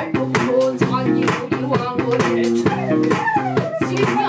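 Live band music: a repeating bass guitar riff driven by steady drum kit hits, with a falling sliding note near the end.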